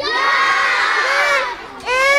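A crowd of schoolchildren shouting and cheering together in reply to a question, many high voices at once for about a second and a half, with a second shout starting near the end.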